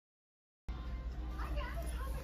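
Silence, then about two-thirds of a second in the room sound cuts in abruptly: a steady low hum with faint high-pitched voices, child-like, in the background.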